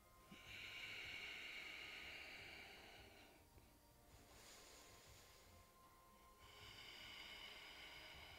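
Faint, slow breathing close to the microphone while a yoga twist is held: a long breath of about three seconds, a fainter shorter breath, then another long breath.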